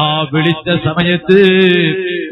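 A male preacher's voice chanting in a drawn-out, melodic recitation, holding its notes in a sing-song line rather than speaking plainly.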